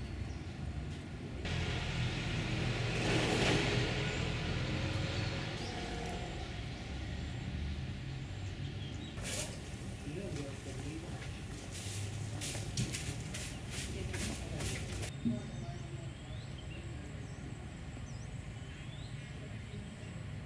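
Steam locomotive standing in steam: a rushing hiss swells and fades over the first few seconds, then a quick run of sharp bursts comes in the middle, with voices in the background. Faint bird calls near the end.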